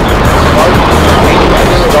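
Space shuttle Discovery's main engines firing just after ignition on the launch pad, a loud steady rumble mixed under background music. A launch commentator calls "start" near the end.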